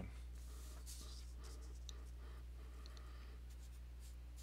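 Faint scratching of a felt-tip marker and hand on paper, a few short soft strokes, over a steady low electrical hum.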